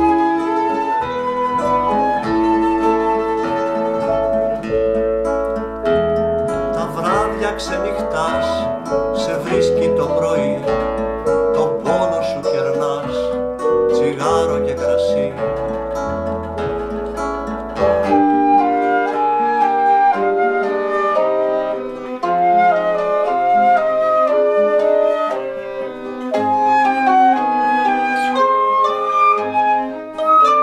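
Instrumental passage of an acoustic ensemble: a flute melody over acoustic guitar with deep double-bass notes, with strummed plucked-string chords in the middle. About eighteen seconds in, the bass drops out and a lighter passage begins, a high flute line over mandolin.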